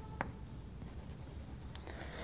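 Faint chalk scratching and tapping on a blackboard, with one short sharp click near the start.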